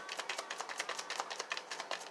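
A deck of tarot cards being shuffled by hand: a quick run of soft card clicks and riffles, several a second.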